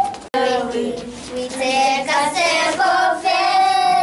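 A group of young children singing together, starting just after a brief break in the sound, with long held notes in the second half.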